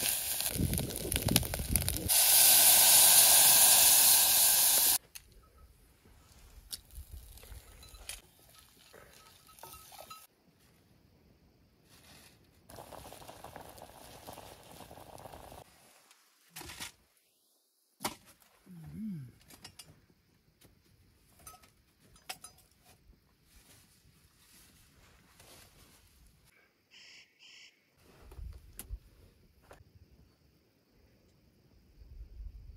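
Greens sizzling as they fry in a blackened pot over a wood fire, a loud steady hiss that stops abruptly about five seconds in. After that it is mostly quiet, with scattered small knocks and clicks.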